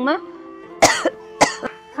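Two short, breathy vocal bursts, coughs or scoff-like exhalations, about half a second apart, over a soft held note of background music.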